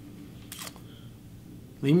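A pause in a man's talk: quiet room tone with one brief soft noise about half a second in, then his speech resumes near the end.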